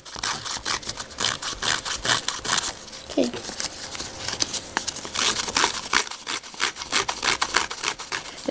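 A Heidi Swapp hand paper distresser scraped again and again along the edges of patterned cardstock paper, a quick, irregular series of rasping strokes that fray the paper edge.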